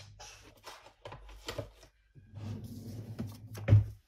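Hands rustling and handling paper banknotes and things on a tabletop, a string of short irregular noises, with a louder thump near the end.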